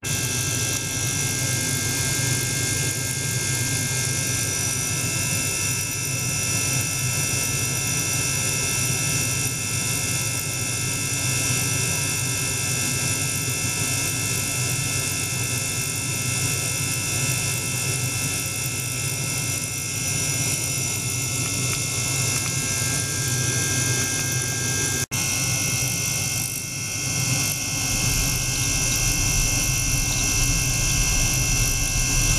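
Small ultrasonic cleaning bath running: a steady hiss with several high whining tones over a low hum. It drops out for an instant about five seconds before the end, and a low rumble grows near the end.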